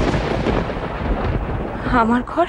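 A loud thunder-like rumble: a dramatic sound-effect sting over a shocked reaction shot, strongest at the start and rumbling on for about two seconds.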